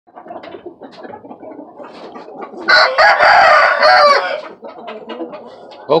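A rooster crows once, loud and drawn out for about a second and a half, after a few seconds of softer scattered clucks.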